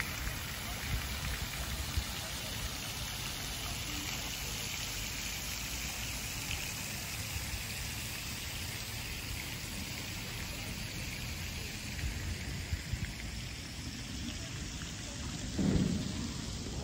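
Pond fountain jets spraying and splashing back onto the water: a steady, rain-like hiss of falling water with a low rumble underneath. A short louder sound comes just before the end.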